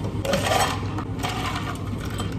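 A drink being poured into a clear plastic shaker cup, first from a plastic jug and then from a metal jug. It comes as two bursts of pouring about a second apart, over a steady low hum.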